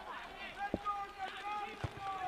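Distant shouted calls from footballers on the pitch, some held and falling in pitch, with two short thuds about a second apart.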